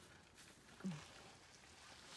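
Near silence with faint background hiss, broken about a second in by one brief, falling vocal murmur from a woman.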